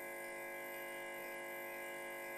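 Steady electrical hum with a faint hiss from a podium microphone and public-address system, with no one speaking.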